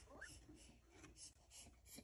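Near silence: faint room tone with a few slight scattered noises.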